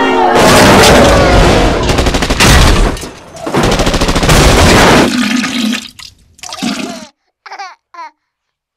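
Loud rushing noise effect from a logo sting, in two long surges that tail off, followed near the end by brief high squeaky voice-like chirps.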